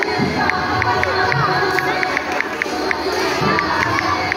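Large crowd of many voices talking and calling out, with children shouting among them. A few light, high clicks a second run steadily through it.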